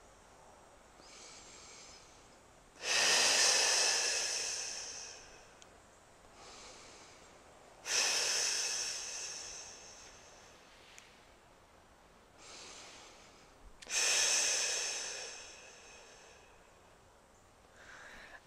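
A woman's breathing in three cycles: a quiet inhale, then a long, strong exhale that starts sharply and fades over two to three seconds. These are stability breaths, the exhale drawing the belly in to engage the transverse abdominis.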